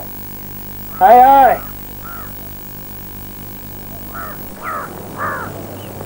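Crows cawing: one loud caw about a second in, then a few fainter caws farther off between about four and five seconds, over a steady low hum.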